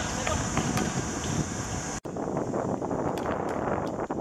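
Outdoor ambience at a football court: wind buffeting the microphone, with faint voices and a few light knocks. The background changes abruptly about two seconds in.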